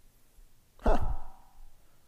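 A man's short, breathy "huh" about a second in, falling in pitch like a sigh; otherwise quiet room tone.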